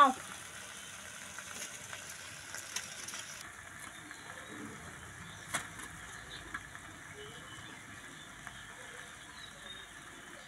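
Low steady hiss with a few faint, sparse clicks and knocks, the sharpest about five and a half seconds in: dry bamboo sticks being handled as stove fuel.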